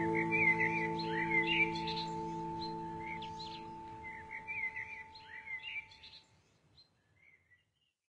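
The last strummed acoustic guitar chord rings on and slowly dies away, with birdsong chirping over it. Both fade out about six seconds in, leaving only a few faint chirps.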